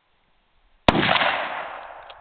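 A single rifle shot from a German Mauser K98 in 8mm Mauser, about a second in, with a second sharp report a quarter second later and a long tail fading away over about a second.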